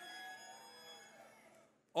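A pause in a man's amplified speech: faint background hiss from the sound system with a few thin, steady high tones, fading away to silence just before the voice comes back.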